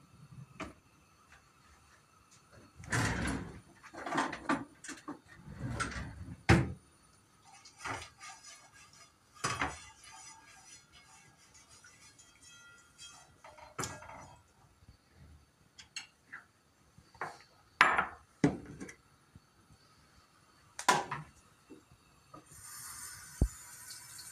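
Intermittent kitchen clatter: short knocks and clicks of a frying pan, oil bottle and utensils being handled on a gas stove, with a few louder sharp knocks among quiet stretches.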